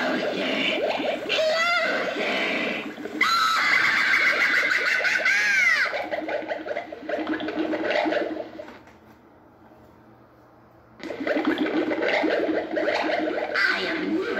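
Gemmy Pink Sock stirring-cauldron witch animatronic playing its recorded witch voice and spooky effects through its built-in speaker. The loudest part, about three to six seconds in, is high sliding cries. The sound drops away for about two seconds past the middle, then starts again.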